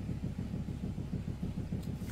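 Quiet chewing of a chewy, gummy apple-ring candy with closed lips, over a low steady hum in the room.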